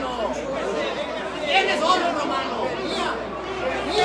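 Race crowd in the grandstands calling out and chattering, many voices overlapping, as the horses run.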